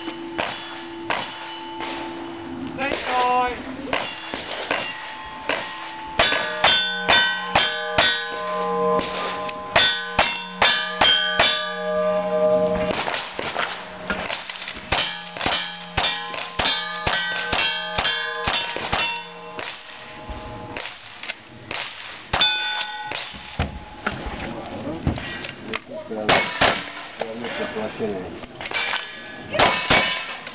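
Gunshots fired in quick strings at steel plate targets, each hit followed by the plate's ringing clang. Cowboy action shooting stage: rapid runs of shots and dings in the middle, then slower, scattered shots toward the end.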